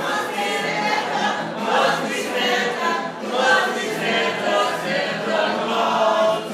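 A group of voices singing a Christmas carol together.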